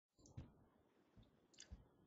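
Near silence with two faint, short clicks, one a little under half a second in and one near the end.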